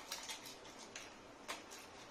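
A few faint, light clicks and taps of hand-handled metal parts in a quiet room, the clearest about a second and a half in.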